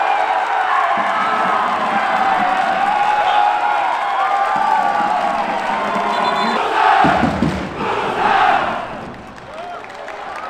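A football crowd of supporters cheering and shouting in celebration of a goal, many voices at once, with two louder surges near the end before it falls away.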